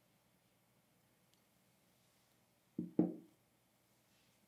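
Near silence, then about three seconds in two soft thuds a fraction of a second apart: glassware, a wine carafe and cup, being set down on a table.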